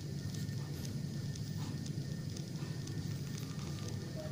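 A steady low hum, with scattered faint clicks from fingers handling a small plastic action camera.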